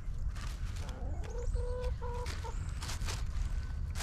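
Backyard hens clucking: a short run of held, even-pitched notes about a second and a half in, over faint rustling and a low steady rumble.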